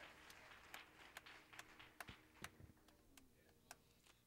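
Near silence: room tone with faint, scattered clicks and knocks.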